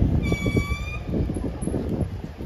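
A short, high-pitched vehicle horn toot, one steady note under a second long, over street traffic noise and wind rumbling on the microphone.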